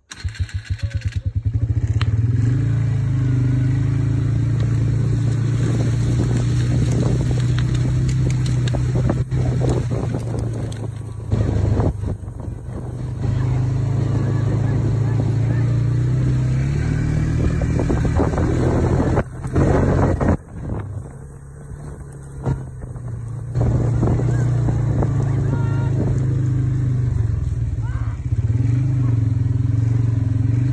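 A vehicle engine running steadily with a low hum, its pitch wavering slightly; the sound drops away briefly twice.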